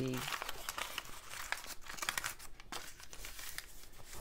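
Thin brown packing paper being crumpled and scrunched by hand, a dense run of crinkling crackles that thins out over the last second or so as the paper is smoothed flat.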